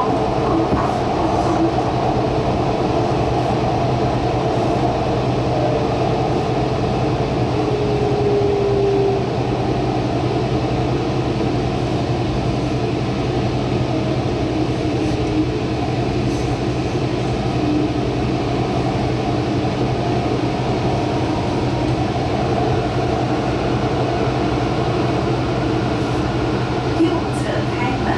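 Taichung MRT Green Line electric train running along its track, heard from inside the car as a steady rumble of wheels and motors. A brief faint whine comes about eight seconds in.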